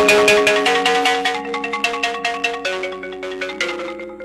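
Marimba played with four yarn mallets: rapid repeated strokes roll sustained chords that shift every second or so, growing gradually quieter.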